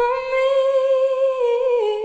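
A woman's solo voice holding one long unaccompanied note into the microphone, with a slight vibrato; the pitch steps down a little near the end.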